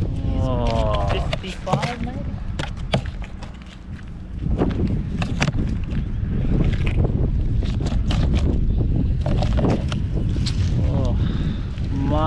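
Wind buffeting the microphone, easing off briefly about three and a half seconds in, with scattered clicks and knocks throughout.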